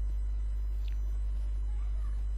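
Steady low electrical hum (mains hum) on the recording, holding at one pitch.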